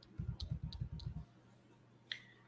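Computer mouse clicking: four or five sharp clicks within about a second. Under them is a quick run of low thuds at the desk that stops just over a second in.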